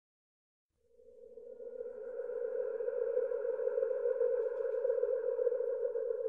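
A single sustained electronic drone note with faint overtones, fading in about a second in and then holding steady.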